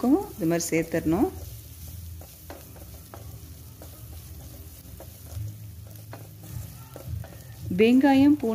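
Shallots, garlic, chillies and curry leaves frying in oil in an aluminium kadai, stirred with a wooden spatula that scrapes and taps the pan in scattered short ticks over a soft sizzle.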